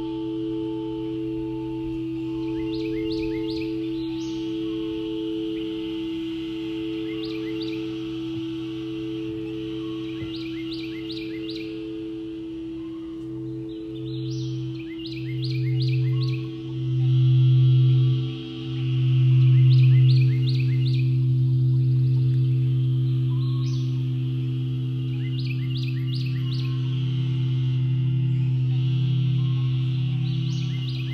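Crystal singing bowls ringing in long sustained tones, one with a slow wah-wah beating. A deep bowl swells louder in pulses about halfway through, then holds. High chirping calls repeat every few seconds over the tones.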